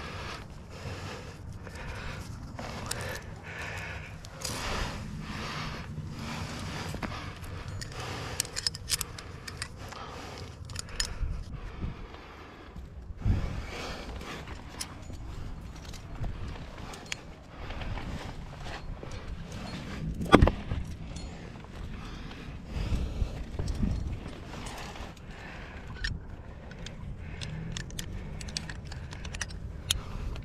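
Climbing gear (carabiners and quickdraws) clinking on a harness, with hands and shoes scraping and brushing on rock as a climber moves up. Scattered irregular clicks run over a low rumble, and one sharp knock about twenty seconds in is the loudest sound.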